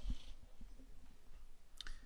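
Faint clicking of a stylus tapping and moving on a pen tablet.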